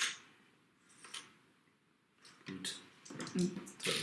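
A few light clicks and taps of plastic miniatures being picked up and set down on a cardboard game board, spaced about a second apart, with a quiet voice coming in near the end.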